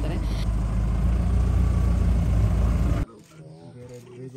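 Safari jeep's engine running with a loud low rumble, which cuts off suddenly about three seconds in, leaving quiet with low voices.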